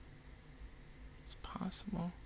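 Quiet room tone, then near the end a few faint, short murmured and whispered syllables with hissy 's' sounds.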